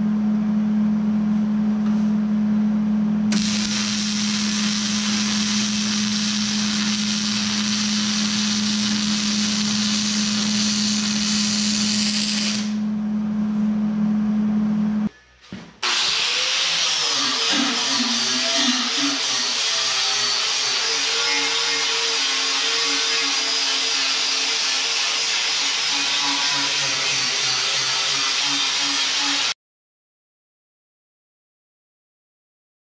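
Wire-feed (MIG) welding on steel angle iron: a steady electrical hum under the crackle of the arc, which stops and starts again twice. After a cut, a corded angle grinder spins up and grinds on the steel plow moldboard, then stops suddenly near the end.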